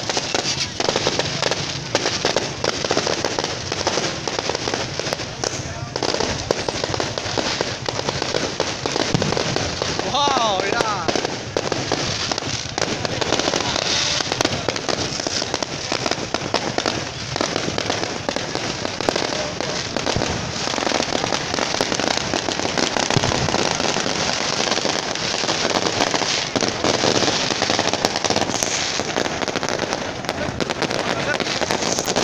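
Fireworks going off in a rapid, continuous barrage of bangs and crackling, with a crowd's voices and shouts mixed in.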